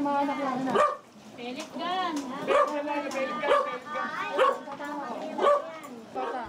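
A dog barking and yipping in a string of short calls, roughly one a second, with people's voices behind it.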